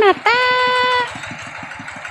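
Small motorcycle engine idling with a steady, rapid putter. Over it, a person's voice calls out, holding one long note for under a second near the start.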